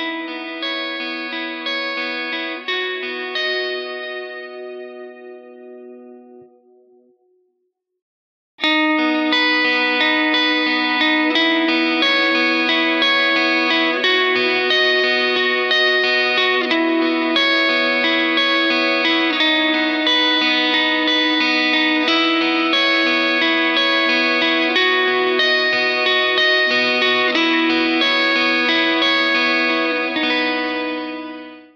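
Electric guitar (Telecaster) played through a Tonex amp-modeler pedal and recorded direct, with sustained ringing notes. The first passage, with the Walrus Audio Canvas in DI mode, fades out over about seven seconds. After a short silence the guitar starts again about eight and a half seconds in, louder, with the Canvas switched to line isolator mode.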